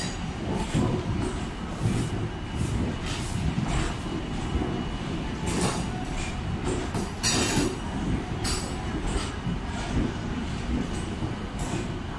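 MEMU passenger train coaches rolling slowly past: a steady low rumble of steel wheels on rail, broken by irregular clacks as the wheels cross rail joints, with a faint thin wheel squeal.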